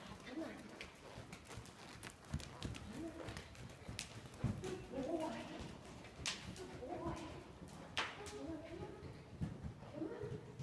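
Hoofbeats of a horse cantering on soft dirt arena footing, under saddle.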